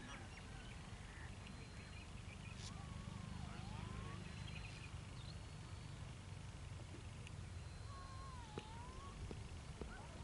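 A bird calling twice, each call a drawn-out note that dips in pitch and rises again, about three seconds in and again near the end, over a steady low outdoor rumble.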